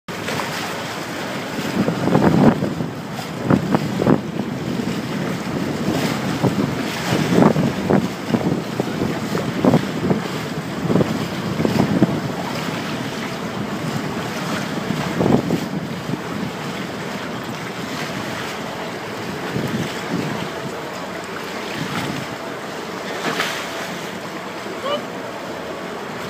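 Wind buffeting the microphone on a moving boat over a steady rush of sea water, with irregular gusty thumps that are strongest in the first half and ease off later.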